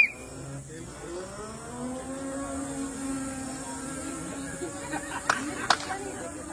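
Battery-electric auto-rickshaw's motor whining as it pulls away, rising in pitch and then holding steady as it drives off. Two sharp clicks come near the end.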